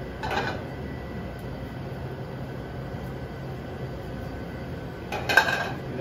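Steady kitchen background hum, with brief clatters of metal tongs against a sauté pan as pasta is tossed, one just after the start and a louder one about five seconds in.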